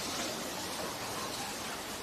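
Steady, even hiss of room tone and microphone noise, with no distinct sounds.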